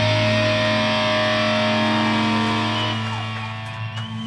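A live rock band's final chord ringing out: electric guitar and bass sustain one chord steadily, with no new strokes, and fade away over the last second or so.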